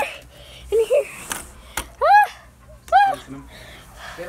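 A person's voice making short high-pitched cries, two of them about a second apart, each rising and falling in pitch. Before them come a couple of brief low vocal sounds and a sharp click.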